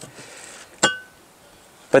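A single sharp metallic clink with a brief ringing tone, a little under a second in, against low outdoor background.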